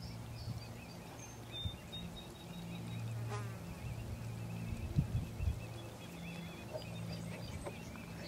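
A low insect buzz that swells and fades, like a fly hovering near the microphone, over a faint steady chirring. A couple of soft knocks come about five seconds in.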